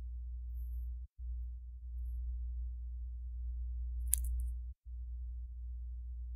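Steady low electrical hum on the recording, cutting out briefly twice, with a single short click about four seconds in.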